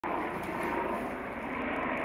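Steady, even outdoor background noise, a continuous rumble with no distinct events.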